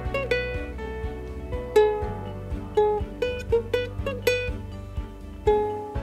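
A ukulele played by picking single notes in a slow, simple melody, about two or three notes a second, each note ringing and fading.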